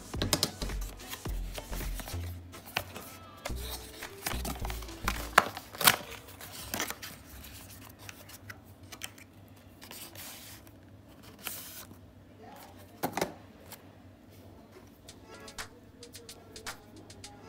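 Cardboard packaging of a phone charger being handled: paper rustling, scraping and sharp clicks as the inner tray is slid out of its box and the cable lifted out, over background music.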